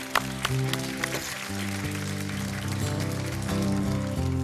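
Acoustic guitar playing the instrumental opening of a song: sharp strummed strokes at first, then ringing chords over steady low notes.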